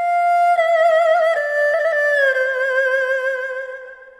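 Chinese flute playing a slow melody: a long high note with vibrato, then a slide down to a lower held note about two seconds in, which fades near the end.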